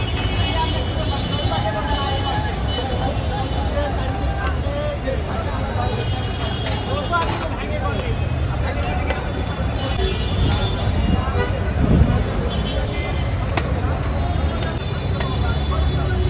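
Busy street ambience: indistinct voices talking over a steady low traffic rumble, with a few light clicks and a brief thump about twelve seconds in.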